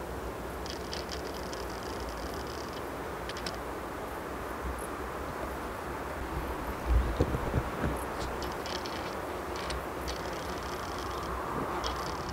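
Nikkor 200-500mm f/5.6 lens's autofocus motor whirring in several short high-pitched buzzing bursts as it drives focus, over a faint steady outdoor background. It is loud enough to be picked up by the shotgun microphone, a noise the owner links to F-mount lenses focusing on a Nikon Z-mount camera.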